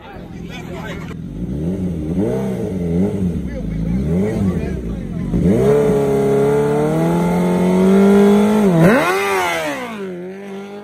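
2006 Suzuki GSX-R1000 inline-four engine revved three times on the start line, then held at steady high revs for about three seconds. Near the end the revs dip and climb sharply as the bike launches.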